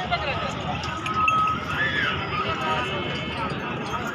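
Goats bleating close by, with people talking in the background.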